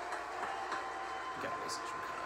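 Faint speech from a television broadcast playing in the room, heard at a distance through the TV's speakers.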